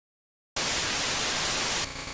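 A burst of static-like hiss that starts suddenly about half a second in, out of silence, and cuts off abruptly near the end.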